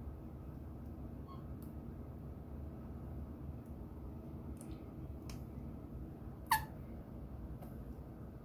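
Plastic ketchup squeeze bottle being squeezed: faint squirts and clicks, with one short sharp squeak about six and a half seconds in, over a low steady hum.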